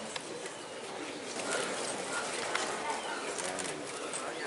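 Crowd murmur of many onlookers talking at once, with a few light clicks.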